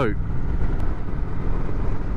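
Kawasaki Vulcan 900 V-twin cruiser running steadily at road speed, a continuous low rumble mixed with wind rushing over the microphone.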